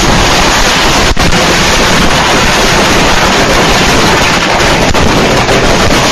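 A large stash of fireworks going off at once: a continuous, very loud barrage in which the individual bangs and crackles blur into one harsh roar. It is heard through a security camera's microphone, which it overloads into a distorted wash.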